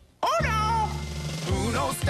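A macaw calls twice over jingle music: a squawk that falls in pitch right after a brief silence, then a shorter wavering call near the end.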